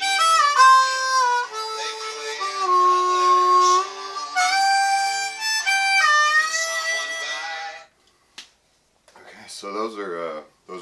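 Solo diatonic harmonica playing country-style fills: short phrases of single notes, some bent and scooped between pitches. The playing stops about eight seconds in, and a man's voice starts speaking near the end.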